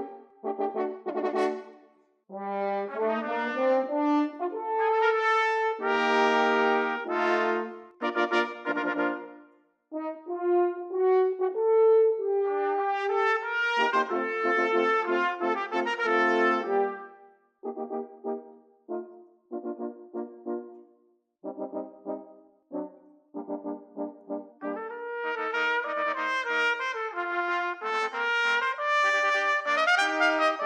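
A brass sextet of three French horns (Alexander 103 double horns) and three Bach 180ML trumpets playing in harmony, in phrased chords. In the middle the chords turn short and detached, and near the end they are held.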